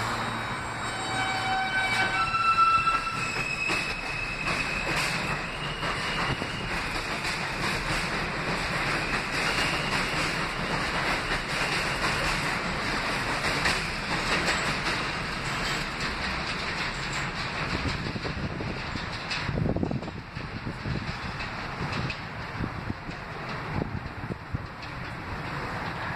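R160A subway train pulling out. Its traction motors give a series of stepped tones that rise in pitch over the first few seconds. Then the cars roll past with steady wheel-on-rail noise and clicks over the rail joints, which drops off after about twenty seconds as the train leaves.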